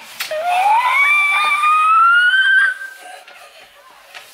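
A young boy's long, loud yell that rises steadily in pitch for about two and a half seconds and stops a little before the end, as he rides down an enclosed plastic tube slide.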